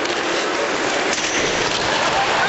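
Hockey arena crowd noise, a steady dense wash of many voices with no single sound standing out.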